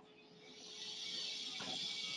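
Steady, faint hiss of background noise from a video clip being played back within a slide presentation. It fades in about half a second in.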